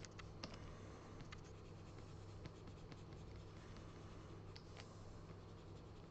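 Faint, scattered taps and light scratching of a pen stylus on a drawing tablet during digital painting, over a low steady hum.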